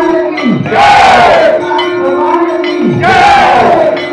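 Crowd of devotees chanting a devotional call in unison, loud group shouts recurring about every two and a half seconds, with lead singers on microphones and a steady held tone underneath.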